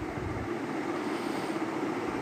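Ground spices and onion frying in oil in a nonstick pan, a steady sizzle, as a wooden spoon stirs chili and turmeric powder through them.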